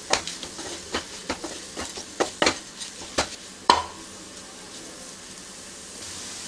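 Spatula scraping and tapping against a nonstick frying pan while stirring a bean and scrambled-egg stir-fry, over a soft frying sizzle. The stirring ends with a louder knock a little before four seconds in, leaving only the faint sizzle.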